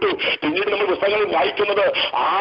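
A person's voice talking on without pause over a telephone conference line. The sound is thin, with no treble above the phone band.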